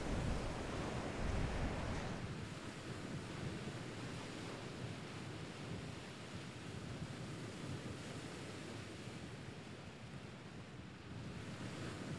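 Steady beach ambience of ocean surf washing in, with wind buffeting the microphone, the low wind rumble heavier in the first two seconds.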